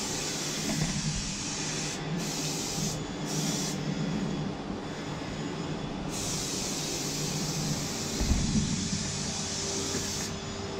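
Aerosol spray can hissing in separate bursts: a longer spray at the start, two short puffs, then another spray of about two seconds. A steady low hum runs underneath, and a low bump, the loudest sound, comes just after eight seconds.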